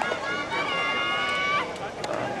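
A long drawn-out shout from a single voice, held on one pitch for about a second, over background voices.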